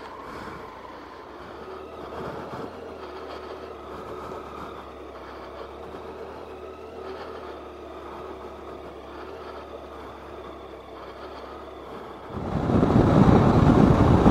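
Motorcycle engine running steadily at low revs as the bike rolls slowly along a rough grassy track. About twelve seconds in it gives way to a much louder rush of wind and engine at road speed.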